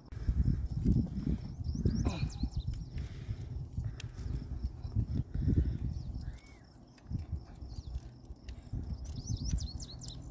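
Rumbling wind and handling noise on the microphone, with light knocks and rustling, as a leash clip is fastened onto a corgi's collar.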